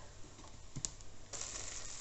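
Quiet kitchen sounds: a few faint taps as chopped green onion is slid off a wooden cutting board into a wok of fried rice, then a faint steady frying hiss from the wok that begins just past halfway.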